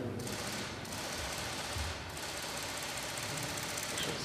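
Many camera shutters clicking rapidly and overlapping in bursts, with two short breaks early in the run, as press photographers shoot a posed handshake.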